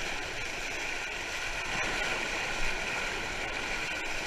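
Steady rush of Potomac River whitewater churning and splashing around a kayak sitting on a river wave.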